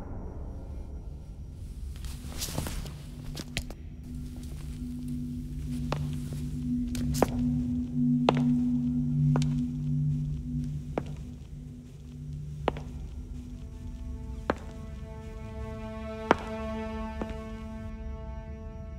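Background film-score music: a steady low held drone, giving way near the end to a higher sustained chord, with sparse sharp knocks about once a second or so over it.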